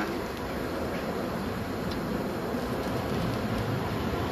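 Steady rumble of street traffic passing by, with no sharp events.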